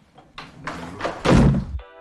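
A door pulled open and slammed shut, the heavy slam loudest about a second and a quarter in. Near the end a steady held tone starts.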